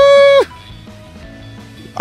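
A man's high-pitched, drawn-out vocal wail that wavers, then holds, and cuts off about half a second in, followed by soft background music.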